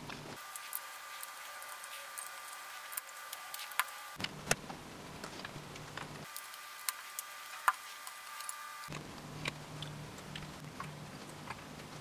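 Plastic LEGO bricks clicking and tapping as they are handled and pressed onto the model: scattered sharp clicks, a few louder than the rest, over a faint steady hum that changes abruptly several times.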